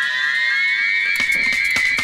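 Dub reggae breakdown: the bass and kick drop out while an electronic tone with echoing layers glides upward and then holds high. Thin hi-hat ticks come back in about a second in.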